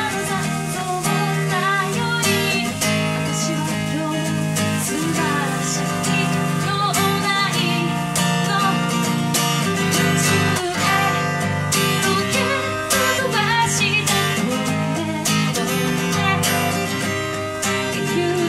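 A woman singing a song while strumming an acoustic guitar, played live as a solo voice-and-guitar performance.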